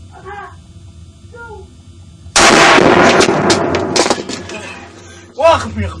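A single very loud rifle shot about two seconds in, with a long tail that dies away over the next couple of seconds, followed near the end by a man crying out.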